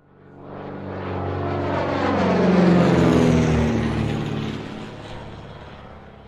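Propeller airplane flying past: its engine sound swells, peaks about halfway through with its pitch dropping, then fades away.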